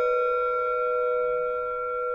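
A Tibetan singing bowl ringing on after being struck, several overtones held together and slowly fading, with a gentle wavering beat in its low tone.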